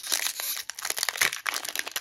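A foil trading-card booster pack (Yu-Gi-Oh Battle Pack: Epic Dawn) being crinkled and torn open by hand: a dense, irregular crackle of thin foil.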